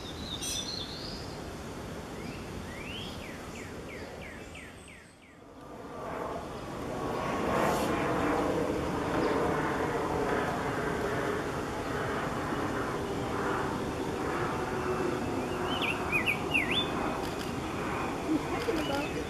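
Male rose-breasted grosbeak singing a short, quick warbled phrase near the end, over a steady hum of background noise. Earlier, a quick run of about eight short rising chirps from a small songbird.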